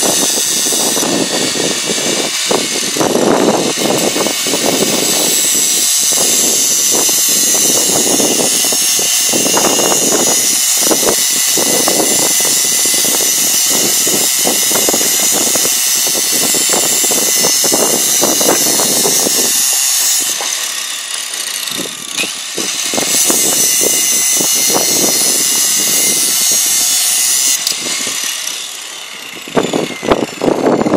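Prestressing strand pusher machine running loudly: its electric motor and drive rollers feed a steel strand into the duct, a steady whirring over irregular rattling of the strand. The noise dips briefly about two-thirds of the way through and again near the end.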